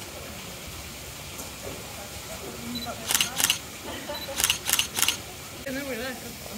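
Camera shutter clicks, five in all: a pair about three seconds in and a quick run of three a second later. Under them runs the steady hiss of water falling from a garden waterfall.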